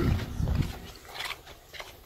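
Footsteps and low handling thumps from a handheld camera being carried, loudest in the first half second, then a few faint clicks and knocks.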